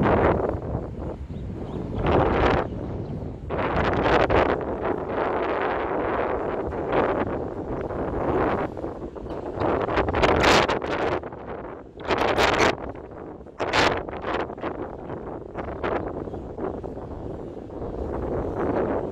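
Wind buffeting the microphone in irregular gusts, with several sharper gusts in the middle of the stretch.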